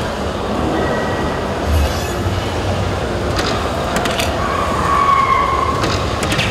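Steady crowd-and-machine hubbub of a hall full of electronic soft-tip dart machines. A short electronic tone near the start and a longer steady electronic tone in the second half come from the dartboard machine. Sharp taps come a little past the halfway point, and one dart lands near the end.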